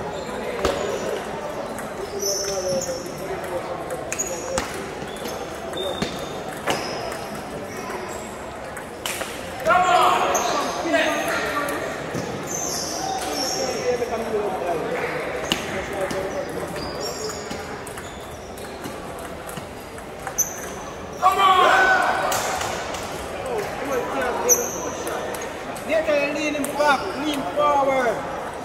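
Table tennis ball clicking against paddles and the table in rallies, sharp ticks coming at irregular intervals. Voices are heard at times, loudest about ten seconds in and again around twenty-one seconds.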